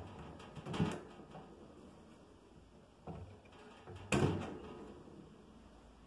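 A few short metallic knocks and clicks from a stainless Cornelius keg post and its poppet being handled as the poppet is pushed out with a wooden skewer. The loudest knock comes about four seconds in and rings briefly.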